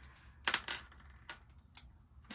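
A few light, sharp clicks and taps of a pen-shaped pick-up tool against a sheet of adhesive-backed glitter sequins and the cardstock as small sequins are lifted off and pressed into place.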